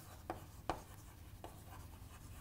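Chalk writing on a chalkboard: faint scratching with three short, sharp taps as the chalk strikes the board.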